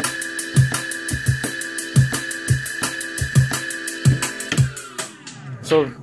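A drum and bass track playing through a Pioneer DDJ-SX2 controller with Serato. The kick and snare are re-triggered from the hot-cue pads with quantize on, so they come at slightly uneven spacing. The music stops about three-quarters of the way through and fades out briefly.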